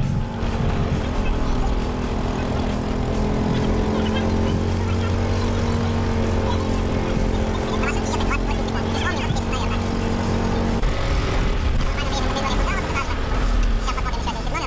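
Resort golf-cart shuttle riding along paved paths: a steady motor hum over rolling noise, the hum cutting off about eleven seconds in.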